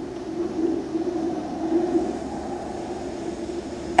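Low, steady rumbling drone from a film soundtrack played over theater speakers, swelling and easing slowly, with a faint hiss above it.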